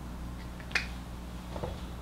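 Dry-erase marker on a whiteboard: one sharp tap about three-quarters of a second in as the tip meets the board, then a few faint ticks of writing, over a low steady hum.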